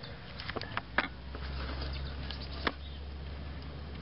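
A few sharp metallic clicks and taps, the strongest about a second in and one near the end, as a screwdriver works the locking lever of a seized drum brake's star-wheel adjuster to release it. A low steady hum comes in about a second in.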